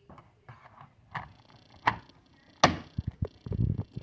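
Plastic clicks and knocks from a Honeywell T4 Pro thermostat body being pushed back onto its wall mounting plate. There are a few separate clicks, the loudest a little past halfway, then a quick cluster of taps and dull thumps near the end.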